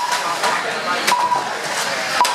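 Two short electronic beeps about a second apart, from a lap counter as 1/12-scale RC banger cars cross the line, with a few sharp plastic knocks from the cars and voices in the background.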